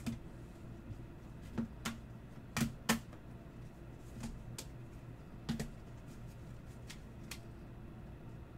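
Rigid clear plastic trading-card holders clicking and tapping against each other and the table as they are gathered and stacked, about ten irregular sharp clicks, the loudest pair near the middle.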